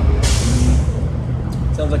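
A sudden hiss of released air about a quarter-second in, fading within about a second, over the steady low rumble of street traffic.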